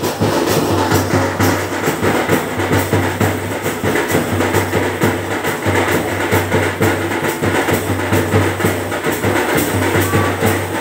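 Loud live drumming at a fast, steady beat, with dense repeated strokes and a deep booming low end.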